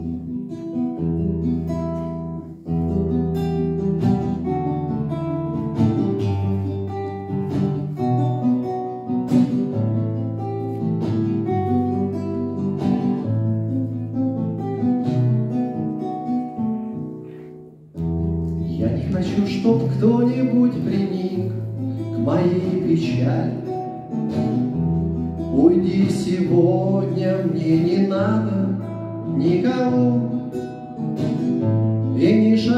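Acoustic guitar played solo as a song's introduction, one clear note after another over a steady bass. After a brief pause about two-thirds of the way in, a man's singing voice comes in over the guitar.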